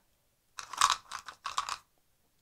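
Handling noise of a clear plastic bottle and its screw cap: a quick run of short, crackly plastic rustles starting about half a second in.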